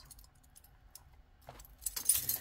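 Faint metallic clinks and light rattling of a metal costume-jewelry necklace being handled, with a louder clink just before the end.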